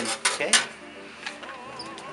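Metal pizza peel knocking twice against the oven rack and pizza stone as it is slid out from under the pizza, over light background music.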